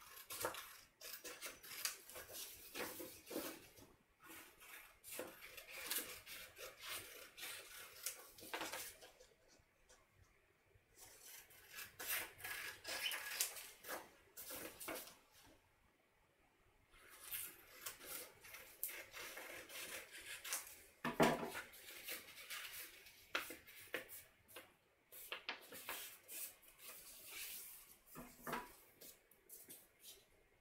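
Scissors snipping through folded printer paper in runs of short, crisp cuts, with paper rustling as the strip is turned, pausing briefly twice. One louder knock comes about two-thirds of the way in.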